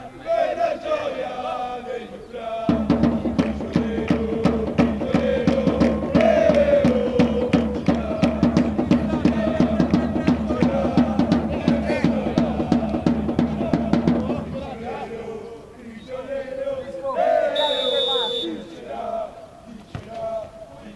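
Football supporters chanting in unison to a steadily beaten drum. The chant starts about three seconds in and breaks off about three-quarters of the way through. Afterwards there are scattered shouts and a short whistle blast.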